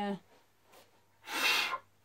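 A person's single sharp breath, about half a second long, a little past the middle, after a brief spoken 'uh'.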